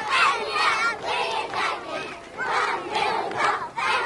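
A crowd of children shouting and calling out at once, many high voices overlapping.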